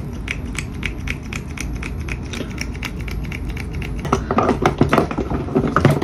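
Makeup bottles and packaging being handled on a table: an even run of light clicks, about three a second, then a louder, irregular clatter near the end, over a steady low hum.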